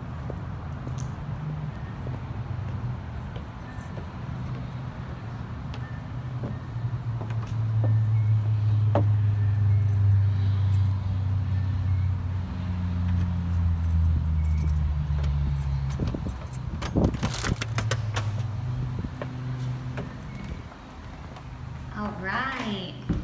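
Low engine rumble of a motor vehicle, swelling for several seconds in the middle and then fading. A cluster of clicks and knocks comes about three-quarters of the way through as a door is opened.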